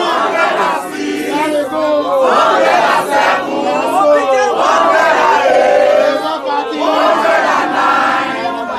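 A crowd of many voices shouting and calling out at once, loud throughout, around a ballot count.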